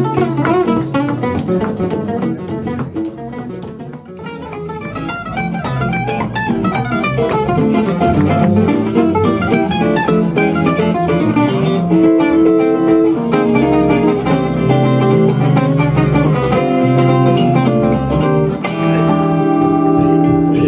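A live gypsy-jazz instrumental on two guitars, a Selmer-style acoustic and an archtop electric, with upright double bass. It opens with fast single-note runs, dips briefly about four seconds in, and from about twelve seconds in moves to long, ringing held chords.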